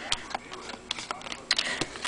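Football trading cards being flipped through by hand, giving a few light, irregular clicks and snaps as the card edges slip off one another.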